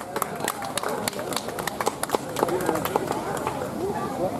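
Scattered audience applause, a sparse run of individual hand claps, over crowd chatter.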